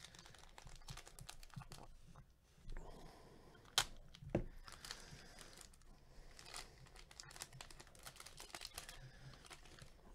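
Foil-lined wrapper of a 2020 Topps Tribute card pack being torn open and crinkled: a faint crackle of small clicks, with a couple of sharper snaps about four seconds in.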